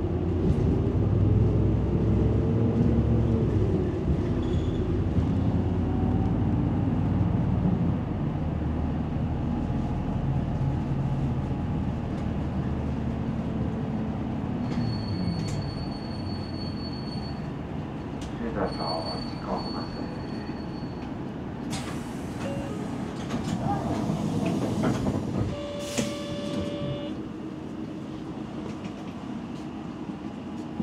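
A large vehicle's engine rumbling, its pitch slowly rising and falling, with two short high beeps in the middle and a burst of hiss later on.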